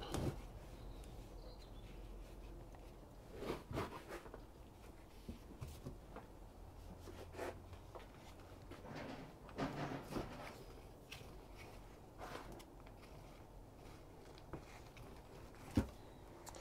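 Hands scooping and spreading light, sieved compost over a cell tray: faint, scattered rustles and scrapes, with a sharp click just before the end.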